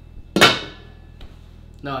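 A pot lid brought down onto a large stockpot: a single sharp clang about half a second in, with a brief metallic ring that fades.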